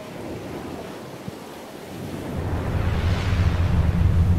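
Ocean surf, laid over the scene as a sound effect: a wash of waves that swells in the second half into a breaking wave with a deep rumble.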